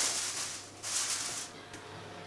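Aluminium foil crinkling as it is crimped by hand around the rim of a cast-iron skillet, in two stretches that end about one and a half seconds in.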